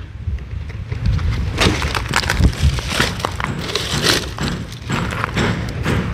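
Dry palm fronds rustling and crackling as they are pressed down and arranged by hand, with irregular sharp snaps of brittle leaf and stem.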